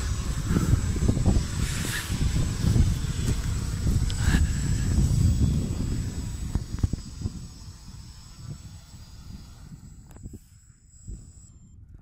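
Quadcopter drone's motors and propellers as it returns and descends to land on autopilot: a low rumble with a thin, steady high whine, fading away over the second half until only a faint whine is left, which stops shortly before the end.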